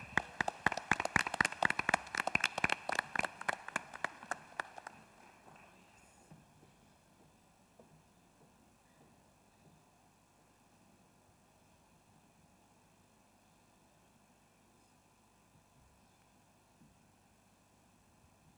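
Audience applauding, many quick irregular claps that die away after about five seconds, leaving quiet hall tone.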